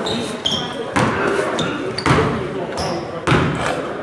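Basketball bounced on a hardwood gym floor by a free-throw shooter readying his shot: three bounces about a second apart. Short high-pitched sneaker squeaks come between them, with voices echoing around the gym.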